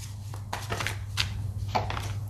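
Tarot cards being shuffled and drawn from the deck: a string of short, crisp snaps and rustles of card stock, over a steady low hum.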